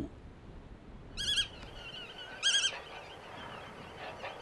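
A wading bird calls twice, about a second and a half apart, each call a short wavering note, with fainter calls between.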